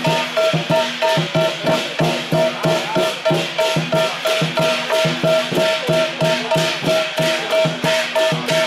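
Southern lion dance percussion: the big lion drum beating a steady, even rhythm of about three to four strokes a second, with gong and cymbals ringing over it.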